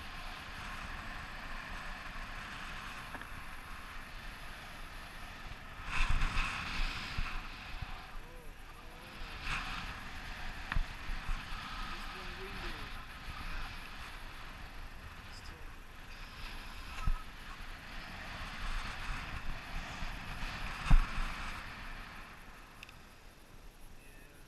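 Wind rushing over the microphone of a selfie-stick camera in tandem paraglider flight: a steady hiss that swells in gusts. A few sharp knocks come through, the loudest about six seconds in and near the end.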